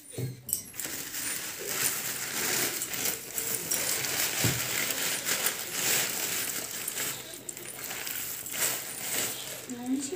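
Thin plastic carry bags rustling and crinkling continuously as they are pulled over a container and knotted, with many small sharp crackles.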